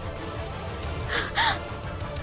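A sharp, breathy gasp about a second in, over low, tense background music.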